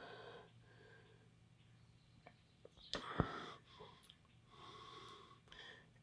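Faint breathing close to the microphone, in a few soft breaths, with one sharp click about three seconds in.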